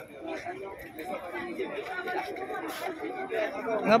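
Dense crowd of pilgrims chattering, many voices overlapping with no one voice standing out.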